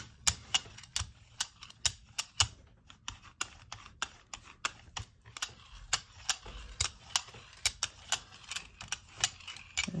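Hand brayer rolled back and forth through acrylic paint on a gel printing plate, making a run of sharp, uneven clicks, about two to three a second, over a faint tacky hiss as the paint is spread out evenly.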